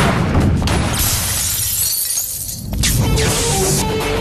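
Film fight-scene sound effects: glass shattering about a second in and again near the end, over the film's background score.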